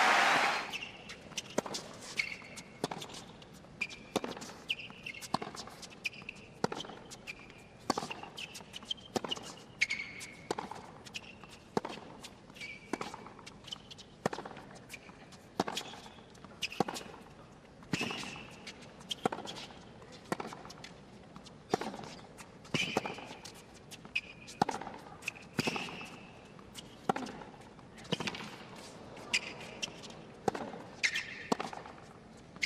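Tennis rally on a hard court: the ball is struck by rackets and bounces, giving a sharp pop about once a second, with short high squeaks of the players' shoes between the hits.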